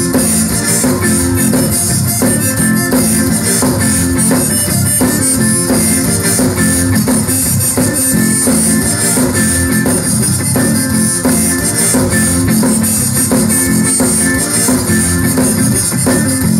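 Zydeco band playing live through a PA: piano accordion, electric guitar and drum kit in an instrumental stretch with a steady beat.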